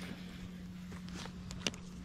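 A few light clicks from a fishing rod and reel being handled as a jig is cast, over a faint steady hum.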